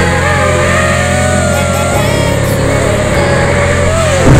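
Small FPV quadcopter's brushless motors and propellers whining, the pitch wavering up and down with throttle, over background music with a steady bass line.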